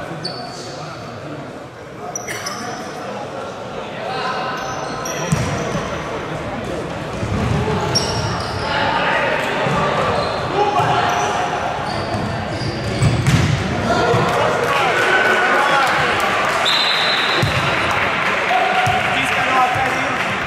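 Futsal play on an indoor hardwood court: the ball knocked and bouncing off the floor, short high squeaks of players' shoes, and players' shouts that get louder in the second half.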